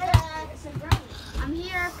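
A boy's voice talking in short bits, with two sharp knocks about three quarters of a second apart.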